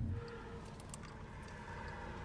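Quiet car-cabin ambience: a faint low rumble with a few small clicks.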